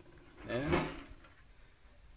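A man's short spoken question word, then quiet room tone.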